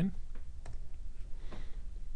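A few separate light clicks from a computer keyboard and mouse as a number is typed in, over a steady low hum.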